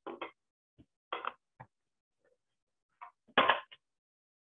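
Scattered short clicks and knocks of hands handling parts of a clamshell pipe-cutting lathe and its air motor hose. The knocks are irregular and separated by silence, with the loudest cluster about three and a half seconds in.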